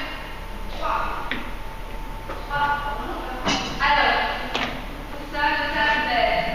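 Voices talking, with two sharp knocks about three and a half and four and a half seconds in.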